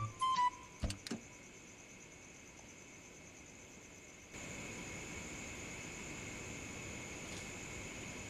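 A few sharp clicks and knocks in the first second, then faint hiss. After about four seconds a steady, high-pitched chirring of night insects comes in and holds.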